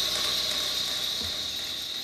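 Hand percussion in a miked bucket of water: unpitched rattling and splashing in place of pitched notes, with a soft low knock about midway.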